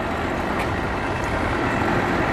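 Outboard boat motors idling at low speed: a steady engine drone with a low rumble.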